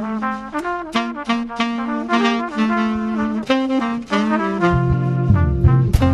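Small jazz band playing an arrangement of a Christmas tune: trumpet and tenor saxophone carry the melody together, and a low bass part comes in near the end.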